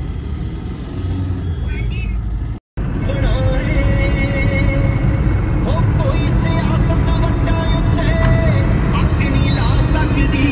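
Car driving, its low road and engine rumble heard from inside the cabin. About two and a half seconds in, the sound cuts out for a moment, and background music with a held melody then plays over the rumble.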